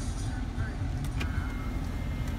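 Steady low rumble in the cabin of a 2016 GMC Yukon Denali XL, with a single click a little after a second in.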